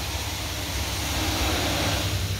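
Steady hum and hiss of a small electric pump run off a battery, pushing fuel through a hose into a jerry can.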